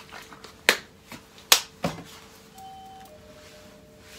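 A few sharp clicks and knocks from a bottle being handled and set down on a steel kitchen counter, the loudest two about a second apart.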